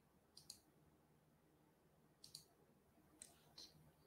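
Near silence with about six faint, sharp clicks: close pairs about half a second in and just past two seconds, then two single clicks after three seconds.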